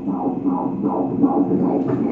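Fetal heartbeat played through an ultrasound machine's Doppler speaker: a fast, even, whooshing pulse at about three beats a second, from the heart of a 22-week fetus.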